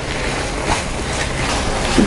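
Wooden spatula stirring and scraping a thick milk-powder and ghee mixture in a nonstick pan, with the cooking mass sizzling steadily underneath and scrape strokes at irregular intervals.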